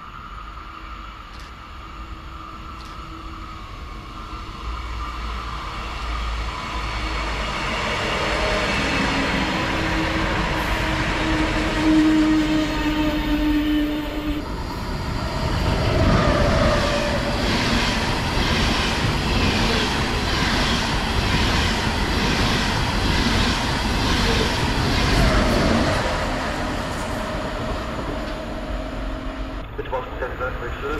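Deutsche Bahn ICE high-speed train approaching and running past along the platform. It grows louder over the first dozen seconds with a slowly rising tone, then passes with wheels clattering in an even rhythm that fades in the last few seconds.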